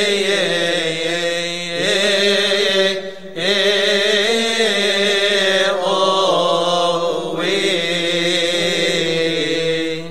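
Coptic liturgical chanting, a wavering melismatic vocal line sung over a steady low held note, with a short break for breath about three seconds in.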